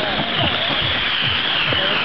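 Spectators shouting and cheering, many overlapping voices over a steady rushing hiss.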